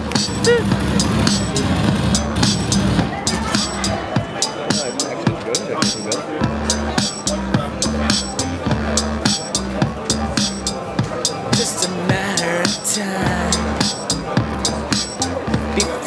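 A looped electronic drum beat and synth bass line from a dualo digital instrument, with melody notes played over them on its hexagonal keys.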